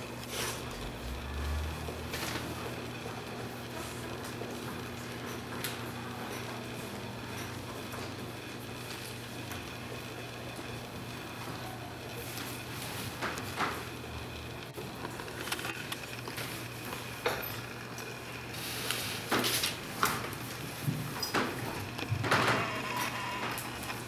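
Quiet classroom ambience: a steady low hum, with scattered small knocks and paper and pencil noises as students write at their desks. The knocks and rustles grow busier near the end.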